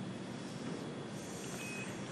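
Steady hiss of an open air-to-ground radio channel between transmissions, with a short, faint high beep about a second and a half in.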